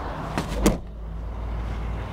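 Tailgate of a Daewoo Musso SUV being swung shut: a lighter knock, then a sharp slam as it latches about two-thirds of a second in.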